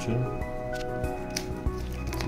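Background music with steady held tones, over a few brief clicks and rustles from a paper instruction leaflet being handled.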